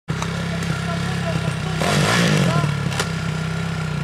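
Off-road dirt bike engine running steadily, then briefly revving louder about two seconds in.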